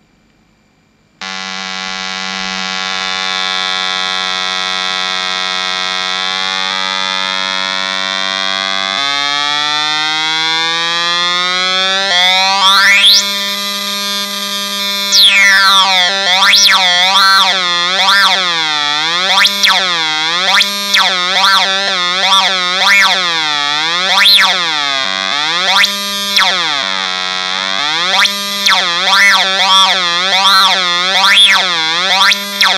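Buzzy square-wave tone from an 8-ohm speaker driven by a 555 timer oscillator, starting about a second in. It holds a low steady pitch at first, then slides as the potentiometer is turned, and in the second half swoops up and down again and again.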